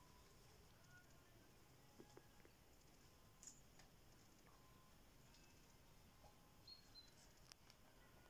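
Near silence: faint outdoor background with a few soft ticks and brief faint chirps scattered through it.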